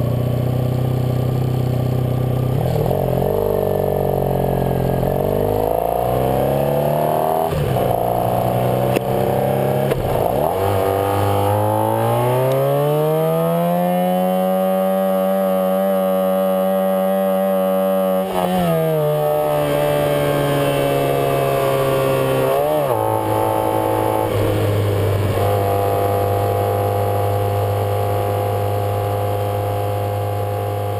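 Honda Sabre V4 motorcycle engine accelerating under load, its pitch climbing in steps through gear changes, then holding flat for about five seconds at around 5,500 rpm, where it will not rev any higher, before dropping back in two steps to a steady cruise. The rider blames the rev ceiling on an ignition fault that is not the CDI, which he suspects may be a bad ignition coil.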